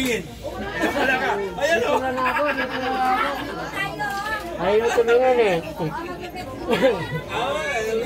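People talking in casual conversation, more than one voice, with no clear single speaker.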